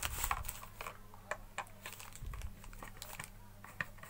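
Irregular light clicks and taps of a long screwdriver working against the plastic handle of a new Wipro electric iron as the handle screws are taken out.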